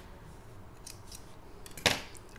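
Small scissors cutting the working yarn after the bind-off: a few faint clicks, then one sharp snip near the end.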